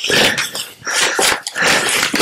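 Nylon backpack fabric and stuff sacks rustling and scraping in irregular bursts as gear is pulled out of the pack.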